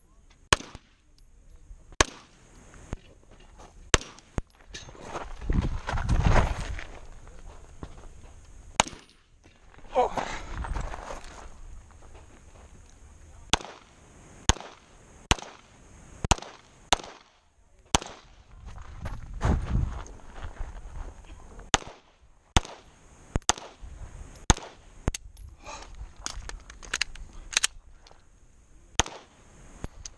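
Pistol fired again and again: single shots and quick pairs, with strings of rapid shots late on, from the shooter's own position. Between the strings come stretches of rushing noise.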